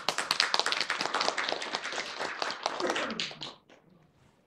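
A small audience applauding, many hands clapping at once, dying away with a few last claps about three and a half seconds in.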